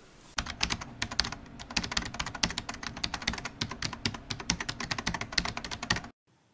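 Computer keyboard typing: a fast, uneven run of short key clicks, many a second.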